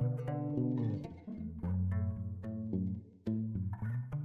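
Background music with a plucked bass line and short string notes, dropping out briefly about three seconds in.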